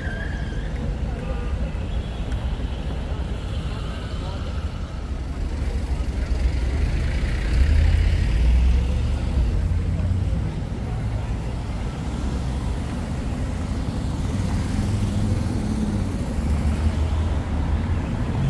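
City street ambience dominated by a low rumble of road traffic, which swells briefly about eight seconds in as if a vehicle passes, with faint voices of passers-by.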